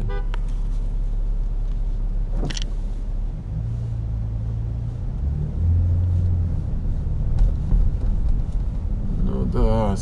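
Car driving in slow city traffic, heard from inside the cabin: a steady low rumble of engine and road noise, with a low engine drone that swells for about three seconds around the middle.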